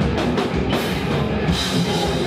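A heavy rock band playing live at full volume, with the drum kit pounding and cymbals crashing under dense, distorted instruments.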